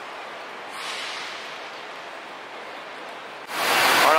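Steady, even outdoor city background noise with no distinct events. Near the end it cuts abruptly to a much louder, busier bus-station noise.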